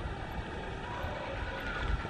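Steady outdoor background noise: a low rumble under a faint hiss, with no distinct events.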